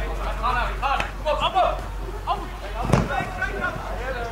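Scattered shouts of players' voices across a football pitch, words not clear, with one sharp thud about three seconds in from a football being kicked.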